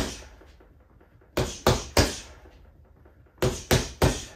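Punches landing on a Quiet Punch doorway-mounted punching bag in one-two-three combinations (jab, cross, lead hook): impacts in sets of three, about a third of a second apart. One set lands about a second and a half in and another near the end, with the last punch of a previous set at the very start.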